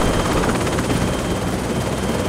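Helicopter noise heard from inside the cabin: a steady engine and rotor drone with a thin, high steady whine above it.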